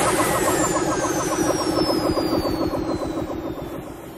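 A rapidly pulsing, motor-like sound effect with a thin whistle falling slowly in pitch over it, fading out near the end.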